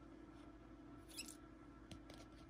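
Near silence: room tone with a steady faint hum, broken by a brief faint squeak about a second in and a small click near the end, from rigid plastic trading-card holders being handled and swapped.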